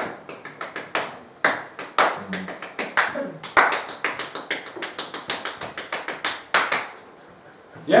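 Hands clapping out a drum rhythm based on a nursery rhyme: a long run of quick, unevenly grouped claps that stops near the end.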